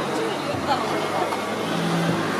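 A car passing close by at low speed, its engine and tyres heard under a crowd's steady chatter and voices.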